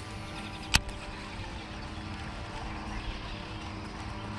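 Baitcasting reel cranked during a lure retrieve, with a steady low hum underneath and one sharp click about three-quarters of a second in.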